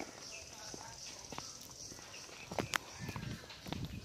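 Footsteps on an unpaved dirt path: irregular scuffing steps with a few sharp clicks, heaviest near the end, over a steady high-pitched hiss.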